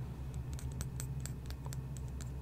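Fingernails tapping on a small glass dropper bottle close to the microphone: a run of light, irregular clicks, several a second.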